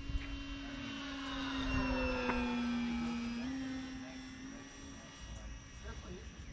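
Electric motor and propeller of an E-flite Pitts S-1S 850mm RC biplane droning in flight as it passes, growing louder towards the middle and then fading. Its pitch sags slightly, then steps up a little over halfway through.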